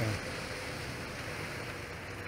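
Steady outdoor background noise with a faint, even hum running through it.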